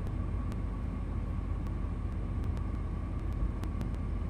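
Steady low background rumble with a faint steady high tone and a few faint ticks, with no speech.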